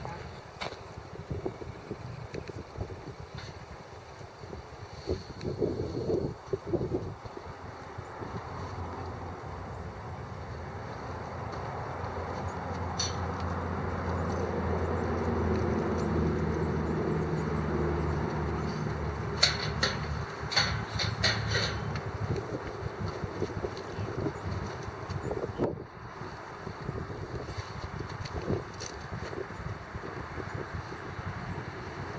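A low engine drone, as of a vehicle passing at a distance, swells slowly over about ten seconds and then fades away. A quick run of sharp clicks and jingles comes near its end.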